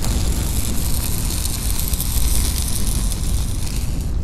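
Logo-reveal sound effect: a loud whoosh of noise over a deep rumble, with no tune. The hissing top drops away near the end while the rumble fades on.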